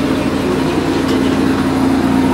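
A machine running steadily nearby: a constant low hum with a single droning tone held throughout.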